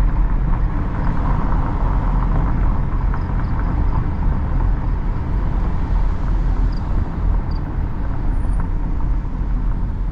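Steady in-cabin road and engine noise of a Hyundai Creta SUV driving at low speed, a constant rumble with no sudden changes.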